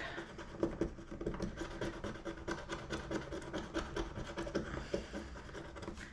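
Scratching the coating off a paper scratch-off card with a thin handheld scratcher: quick, continuous scraping strokes.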